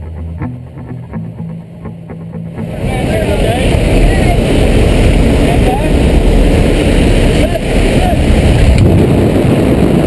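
Background music, then from about three seconds in a loud, steady rush of wind on the microphone from the open aircraft door and the fall into freefall. The music carries on faintly underneath.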